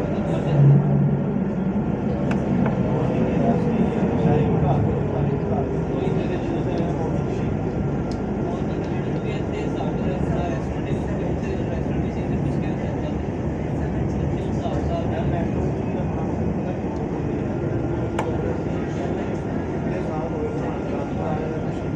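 Steady running noise of a tram in motion, heard from inside the car, with a faint whine that falls in pitch a few seconds in and a short low thud just after the start.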